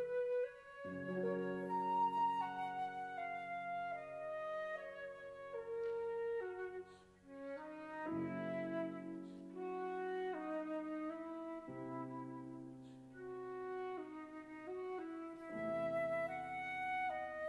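Concert flute playing a melodic line over grand piano accompaniment. The flute leads, and the piano lays down fresh low chords every few seconds.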